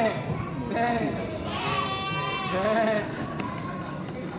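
Children imitating sheep, bleating several times in a row in wavering, quavering voices, the loudest and highest bleat coming about midway.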